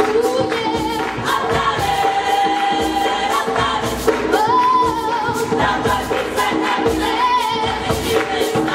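Gospel choir singing live with a band, percussion keeping a steady beat under the voices.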